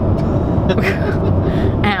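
Steady low rumble of road and engine noise inside a car's cabin at highway speed, with a woman's short laugh near the end.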